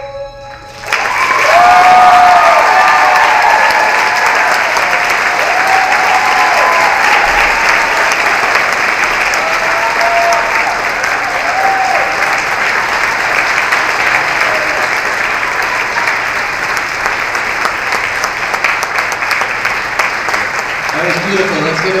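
Theatre audience applauding and cheering, with whoops over steady clapping, breaking out as the last note of the song stops about a second in. A man's voice begins talking near the end.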